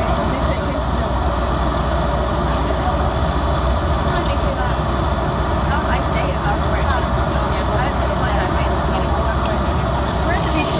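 Steady rumble of a moving road vehicle heard from inside the cabin, with indistinct voices of other passengers talking underneath.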